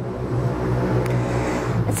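A motor vehicle's engine running, a steady low drone with a hiss over it.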